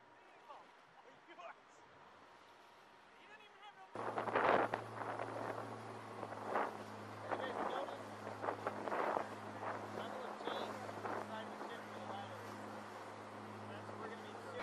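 Faint background for about four seconds, then a small boat's engine running with a steady low drone while water splashes and rushes against the hull at sea.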